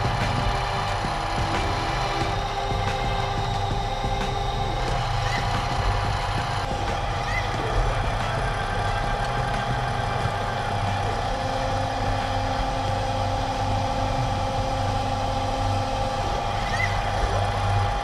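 CNC milling machine running a drilling cycle, a small drill in the spindle boring holes in a soft metal workpiece. There is a steady whine held at one pitch over a low hum.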